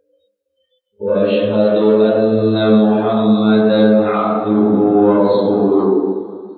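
A man's voice chanting one long held note of an Arabic sermon opening, starting about a second in, dying away with an echoing trail at the end.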